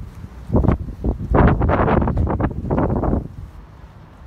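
Wind buffeting a phone microphone, in loud uneven gusts that ease off near the end.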